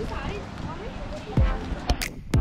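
Background voices of people talking, then about one and a half seconds in electronic music comes in with a loud downward-sliding bass sweep.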